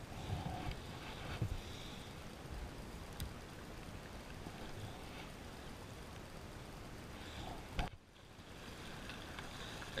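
Steady low wash of water and wind on the microphone, with a few light clicks as the rod and spinning reel are handled; the sound dips briefly near the end.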